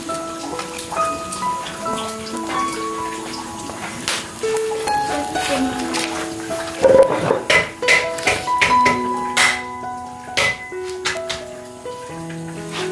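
Background music with a melody plays over sharp crackles and pops from chili peppers roasting in the embers of a wood fire, with the pops coming thickest in the second half.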